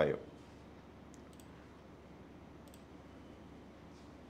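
A few faint computer-input clicks over quiet room tone: two close together about a second in and another near three seconds.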